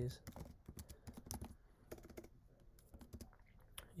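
Typing on a computer keyboard: a quick, irregular run of faint key clicks, dense at first and thinning out in the second half.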